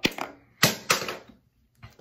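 Handling noise on the recording device: a sharp click, then a cluster of knocks and scuffs a little after half a second in as hands touch the phone or camera.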